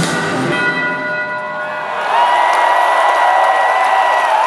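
A bell rings out alone as the song's final note, several steady tones hanging and slowly fading after the band stops. About two seconds in, the arena crowd breaks into cheering, with a long whistle over it.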